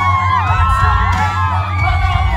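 Live concert music heard from within the audience: a heavy bass beat under singers' voices through the sound system, with fans cheering and whooping over it.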